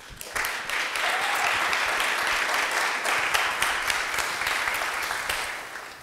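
Audience applauding, swelling up within the first half second and dying away near the end.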